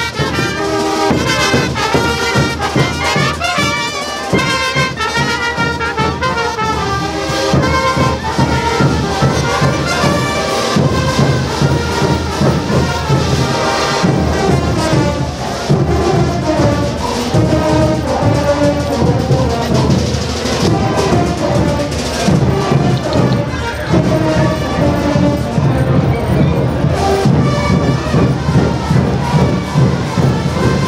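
Marching brass band playing a diablada tune live, trumpets and baritone horns carrying the melody.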